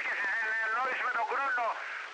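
A voice talking over a narrowband FM two-way radio channel on 38.450 MHz, received by a software-defined radio; the audio is thin, with no bass.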